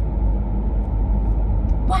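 Steady low rumble of a car's engine and tyres heard from inside the cabin while driving. A woman's voice starts near the end.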